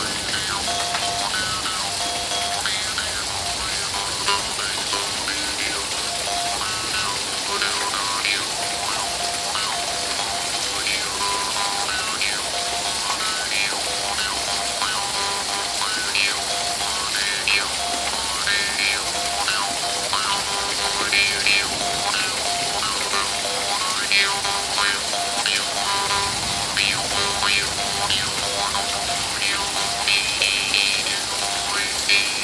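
Small double-reed dan moi, a Hmong brass jaw harp, plucked continuously, its notes shifting from one overtone to the next. Steady rain sounds behind it.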